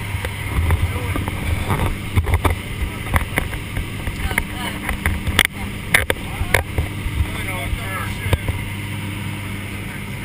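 Steady drone of a skydiving aircraft's engines and propellers heard inside the cabin, with rushing air, and scattered sharp clicks and knocks throughout.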